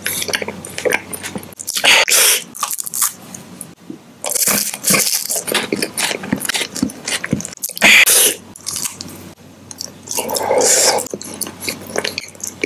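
Close-miked chewing with the lips closed: irregular crunching and wet mouth clicks, swelling into louder bursts every few seconds.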